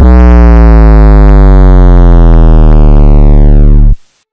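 A blaring, distorted low electronic buzzing tone, inserted as a sound effect, that cuts in and out abruptly. Its pitch sinks slowly and then drops faster just before it stops.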